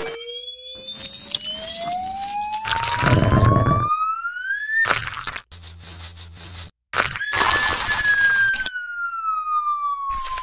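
Whistle-like sound-effect tone gliding slowly upward in pitch for about five seconds and cutting off; after a short gap a second whistle tone glides slowly downward. Short bursts of rough, crunchy noise break in between, the loudest about three seconds in.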